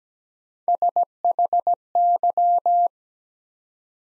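Morse code sent as a steady mid-pitched beep at 17 words per minute, spelling the word SHY: three short beeps, then four short, then long-short-long-long. Right at the end a short, higher courtesy tone begins, signalling that the word is complete.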